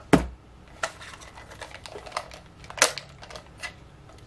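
Desk handling noise: one sharp click right at the start, then a scatter of lighter clicks and taps from a computer mouse and headphones being handled, with one louder tap past halfway.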